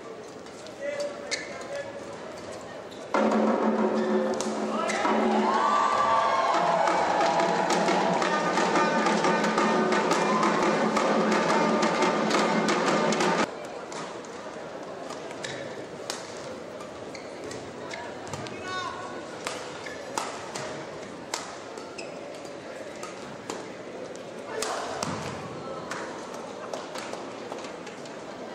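Badminton rally sounds: a string of sharp racket strikes on the shuttlecock and shoe squeaks on the court mat. From about three seconds in to about thirteen seconds, a loud stretch of voices and music in the hall covers them, then cuts off suddenly.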